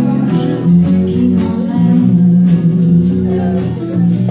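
Small live band playing a slow chanson: guitar and bass guitar holding sustained chords, with light percussion strokes.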